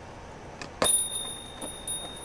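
A small bell rings: one sharp strike about a second in, then a few lighter jingles, with the high ringing fading away after them.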